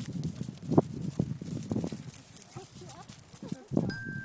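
Horses' hooves thudding on a grass field as a group of horses trots and canters, an irregular run of dull hoofbeats, louder about a second in and just before the end.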